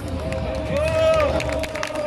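A voice holding a long, drawn-out chanted tone that arches up and down about a second in, from a little ritual troupe over the hum of a street crowd, with faint scattered taps.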